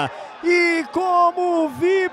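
Male sports commentator's fast, excited speech, in short broken phrases.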